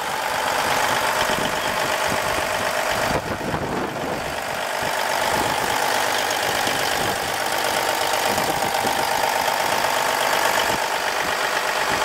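Cummins N14 14-litre inline-six diesel engine idling steadily, heard up close in the open engine bay.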